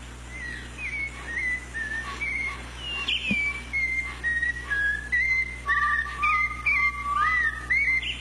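A tune whistled as one melody line, the notes sliding into each other, with a lower second part joining for a few seconds past the middle. A steady low hum runs underneath.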